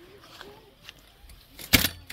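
Quiet outdoor background, then a brief loud knock and rustle near the end.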